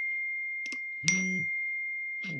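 Telegram Web notification chime for an incoming message: a bright, bell-like ding that rings on steadily. It is struck again about a second in as a second alert arrives.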